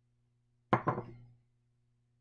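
Plastic measuring beaker set down on the table: a sharp knock with a quick second tap just after, about two-thirds of a second in.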